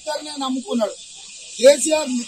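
A man speaking forcefully into a cluster of news microphones, over a steady high hiss. One syllable near the end is the loudest.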